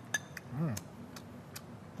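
Light clinks of a ceramic spoon against a small ceramic bowl, about five short taps spread over two seconds, the first few ringing briefly. A short voiced sound from the taster comes about half a second in.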